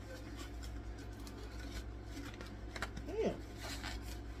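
Sublimation paper and heat tape being peeled off a freshly pressed polyester sock: soft paper rustling, with a couple of crisp crackles near the end, over a steady low hum.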